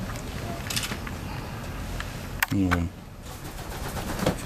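Pigeons shuffling in a wooden loft, with a few faint clicks and a click about two and a half seconds in, followed by a short low hum-like sound.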